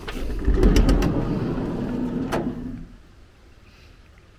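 Toyota HiAce van's sliding side door pulled open by its handle: a few clicks from the latch, then the door rumbles back along its track for about two and a half seconds, with a sharp click a little past two seconds in.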